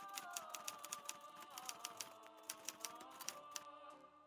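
Quiet typewriter-style key clicks, several a second, over a soft sustained synth tone that drifts a little lower partway through.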